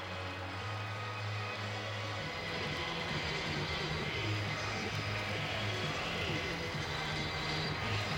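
Stadium sound under a football broadcast: steady crowd noise with music playing, its sustained low notes changing pitch a few times.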